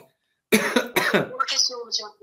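A man's voice speaking, starting about half a second in after a brief silence.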